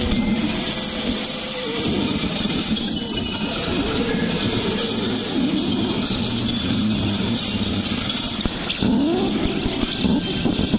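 Experimental electronic music from Reason synthesizers and a granular generator: a dense, noisy texture with recurring swooping pitch glides.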